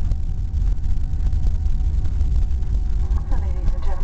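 Airbus A320 cabin noise during the landing rollout, spoilers deployed: a steady low rumble from the runway and engines, with a few faint steady tones above it. About three seconds in, a PA announcement voice starts over it.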